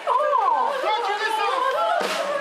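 A high woman's voice gliding up and down in long swoops, between speaking and singing, over crowd chatter.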